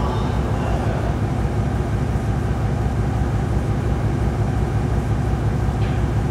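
Loud, steady low rumble with a noisy wash above it: a dense droning sound-collage texture, with no clear beat or melody.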